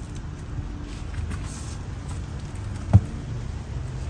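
Steady low background rumble, with one sharp knock just before three seconds in, the loudest thing heard.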